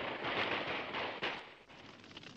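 Musket gunfire sound effect from an animated battle: a dense crackle of many shots that dies away about one and a half seconds in.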